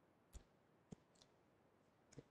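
Near silence broken by two faint, sharp clicks, about a third of a second and about a second in, with a softer click shortly after.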